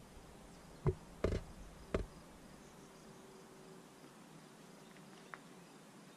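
Three short, sharp knocks within the first two seconds, then quiet outdoor background with a faint steady hum and one small click near the end.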